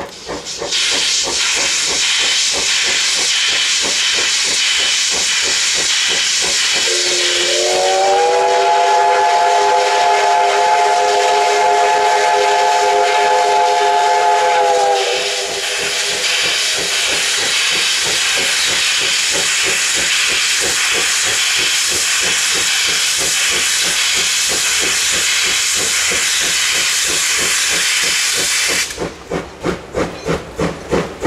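C57 class 4-6-2 steam locomotive blowing steam from its open cylinder drain cocks, a loud steady hiss that starts about a second in and stops just before the end. About seven seconds in, its steam whistle sounds one long blast, rising in pitch as it opens and held for about eight seconds.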